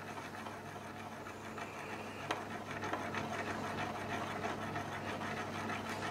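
A quiet, steady low hum of kitchen equipment, with the faint simmer of a butter sauce in a stainless saucepan being swirled on the hob, and a single light click about two seconds in.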